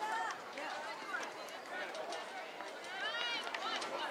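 Indistinct voices of players and spectators calling out across an outdoor soccer field, with one louder, drawn-out shout about three seconds in.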